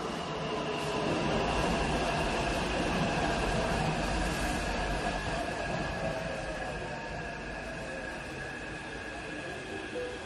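A sustained rumbling, hissing subway-train sound with steady high-pitched tones over a low rumble. It opens a jazz piece built on everyday 'found sounds', swelling in just before the start and easing slightly in the second half.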